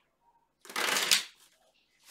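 Tarot deck being shuffled by hand: one dense rustling run of cards, just under a second long, starting a little past halfway through.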